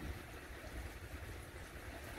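Faint steady low hum with a light hiss: background noise in an aquarium room.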